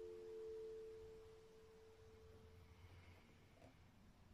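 Final three-string F chord on an acoustic guitar ringing out and fading away, gone within about two and a half seconds, leaving near silence.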